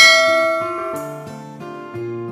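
A notification-bell chime sound effect, struck once and ringing out, fading over about a second and a half, over background music.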